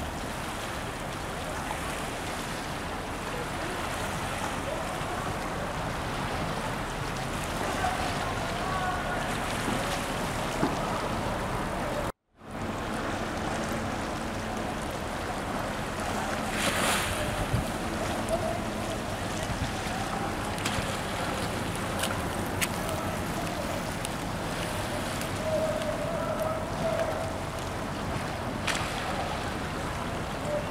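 Steady wash of wind on the microphone and small waves lapping along the shore. The sound drops out for a moment about twelve seconds in.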